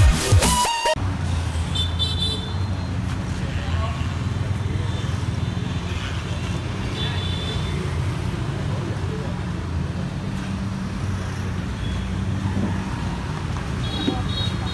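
Electronic intro music cuts off about a second in. After that, a McLaren supercar's twin-turbo V8 idles steadily with an even low hum.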